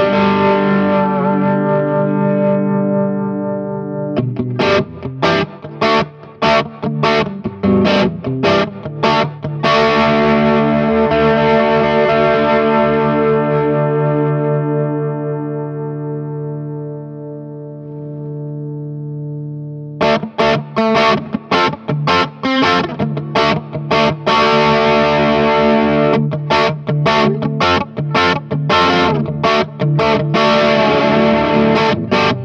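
Electric guitar played through a Veri-Tone Mr. Heath overdrive/distortion/fuzz pedal, switched on, playing distorted chords: a ringing chord, then a run of short choppy stabs, then a chord left to ring and slowly fade for several seconds. About two-thirds of the way through, the choppy stabs start again and run to the end.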